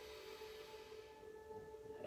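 Faint, steady ringing tones of crystal singing bowls held under the silence, a new higher tone joining about a second in.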